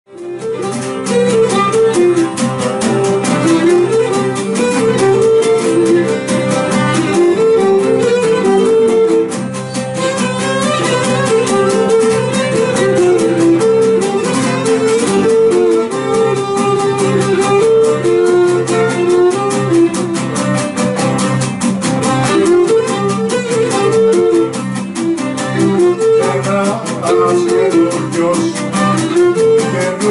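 Cretan lyra playing a lively syrtos melody of quick repeated notes, with laouta strumming a steady rhythmic chord accompaniment; an instrumental passage with no singing.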